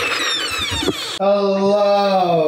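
A person's long drawn-out vocal sound, held and sagging slowly in pitch, starting about a second in, after a second of thin high squeaky sounds.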